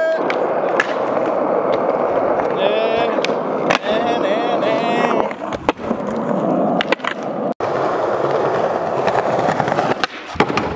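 Skateboard wheels rolling fast over paving, a steady rumble broken by sharp clacks over joints and cracks.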